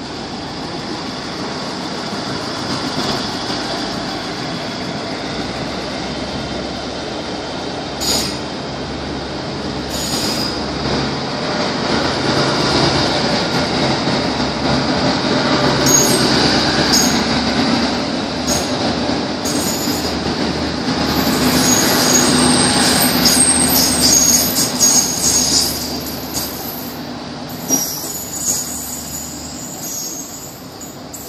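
Two coupled Trenitalia Minuetto diesel multiple units pulling away from a standstill, their diesel engines running under load and growing louder as the train gathers speed. From about halfway there are sharp wheel squeals and clicks, and the sound fades near the end as the train moves off.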